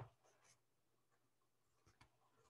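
Near silence with faint pen strokes on notebook paper as a letter is written.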